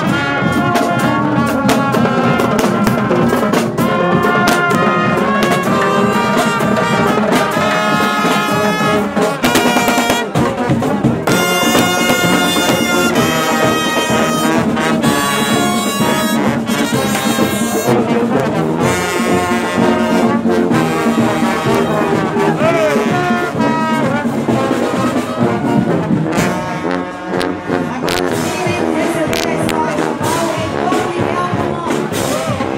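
A marching band playing live: trumpets, trombones and sousaphones carry the melody over the steady beat of marching snare drums.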